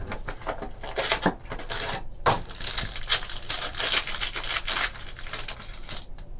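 Clear plastic card sleeve or wrapper crinkling and rustling as trading cards are handled, a run of quick irregular crackles.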